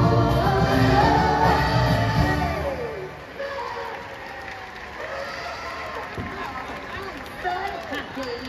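A pop song with singing over the PA ends about three seconds in on a falling vocal note. Crowd noise and scattered voices from the audience follow.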